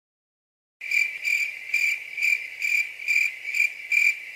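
A cricket chirping: a steady high trill that pulses about twice a second, starting just under a second in.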